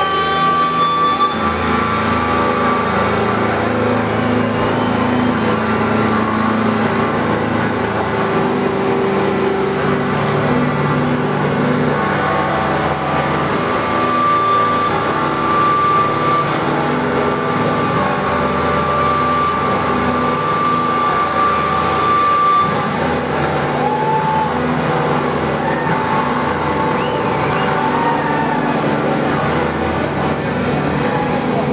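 Loud live punk rock band: distorted electric guitars and drums playing without vocals, with a high guitar note held for several seconds past the middle.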